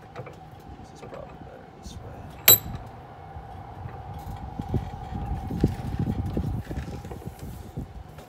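Steel portable vise being worked: a sharp metallic clank with a short ring about two and a half seconds in, then a run of low knocks and bumps as the wooden carving clamped in it is shifted.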